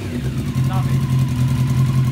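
Yamaha FZ race bike's inline-four engine idling steadily.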